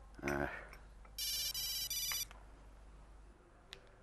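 Mobile phone ringtone: one high electronic burst about a second long, in three quick pulses. A brief vocal sound comes just before it.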